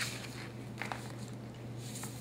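Brief paper rustles as the pages of a hardback book are handled and turned, three short ones, over a steady low hum.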